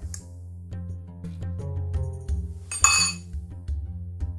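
A metal spoon clinks once against a glass bowl about three seconds in, a short ringing note, over steady background music.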